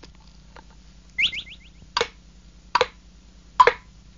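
Cartoon sound effects: a quick run of rising chirps about a second in, then three hollow knocks about 0.8 s apart, like footsteps: a magic gourd hopping along stone steps on its own.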